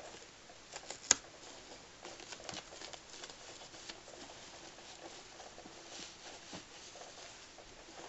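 Hands handling baby clothes and a diaper: quiet rustling of fabric with scattered small clicks, and one sharp click about a second in.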